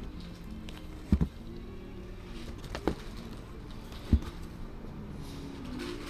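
Vinyl LP records in their sleeves being flipped through in a cardboard box: three short, dull thumps as the flipped records drop against the stack (a doubled one about a second in, then two more), over background music playing in the shop.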